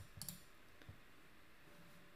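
Near silence with two or three faint clicks in the first second, from the computer being used to advance a presentation slide.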